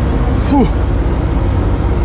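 New Holland CX combine harvester's diesel engine running steadily with a low rumble.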